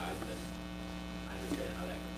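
Steady electrical mains hum, with a faint, indistinct voice in the background.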